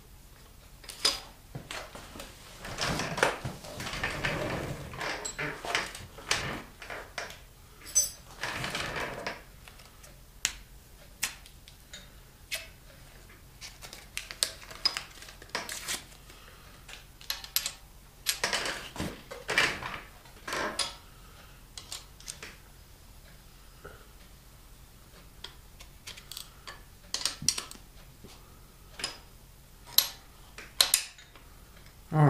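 Scattered metallic clicks, clinks and knocks of a metal drill jig and its hardware being handled and fitted on an aluminum LS engine block, with a few longer scrapes around four, nine and nineteen seconds in.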